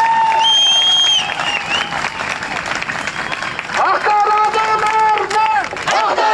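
Crowd applauding, with a shrill whistle about half a second in. About four seconds in, many voices start shouting a slogan in unison, over and over.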